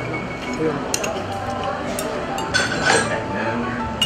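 Chopsticks clinking against porcelain plates and bowls while food is picked up: a few light clinks, with a louder cluster about three seconds in.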